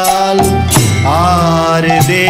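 Kirtan music: a man sings a Bengali devotional song, his voice sliding between notes, over a steadily droning harmonium, with small hand cymbals (kartals) striking now and then.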